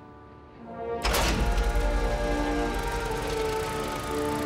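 Background music, and about a second in a sudden low rumbling clatter starts and runs on: the cartoon sound effect of a tower crane lowering its goods cage to the ground.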